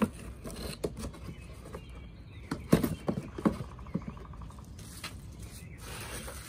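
Cardboard box and its packing being handled: scrapes and a few sharp knocks, the loudest about halfway through.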